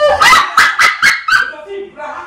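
A small puppy yapping: about five short, sharp yips in a quick run over the first second and a half, with a wailing voice near the end.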